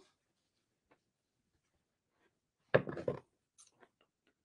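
Scissors cutting a length of jute twine: one short burst of clicks and rustle near the end, followed by a couple of faint ticks.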